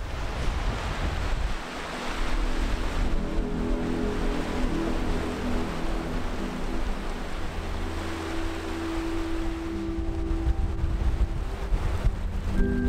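Small waves breaking and washing up a sandy beach, with wind buffeting the microphone. Soft, sustained background music notes come in a few seconds in.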